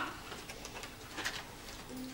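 A bird calling faintly over quiet room tone.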